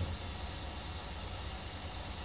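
Prusa i3 3D printer extruding filament: a steady low hum and fan hiss with no rhythmic thumping. The extruder's drive gear is gripping the filament and no longer skipping, because the release lever is pressed to the point where extrusion runs smoothly.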